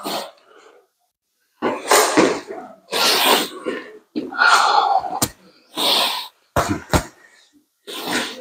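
Boxers' forceful huffing breaths in noisy bursts about a second long, then a few sharp smacks of gloved punches landing near the end.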